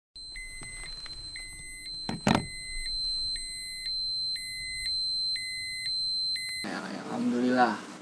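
Film-leader style countdown sound effect: short, evenly pitched beeps about once a second over a steady high tone, with one sharp hit a little after two seconds in. It cuts off suddenly near the end.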